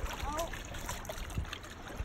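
Small wind-driven waves lapping and splashing against the rocky lakeshore, with wind gusts rumbling on the microphone. A faint voice is heard briefly near the start.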